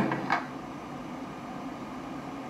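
A man's brief laugh, then steady low hiss of room noise.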